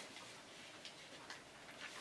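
Near silence: quiet room tone with a few faint, irregular light ticks.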